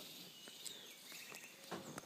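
Faint tropical forest ambience: a steady high insect drone with a few short bird chirps, and a brief call near the end.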